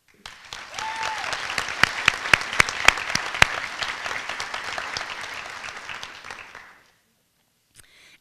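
Audience applauding, with a few sharp, close claps standing out in the middle; the applause dies away about a second before the end.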